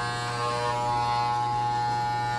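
Corded electric hair clippers buzzing steadily as they cut a child's hair, with a low hum under the buzz.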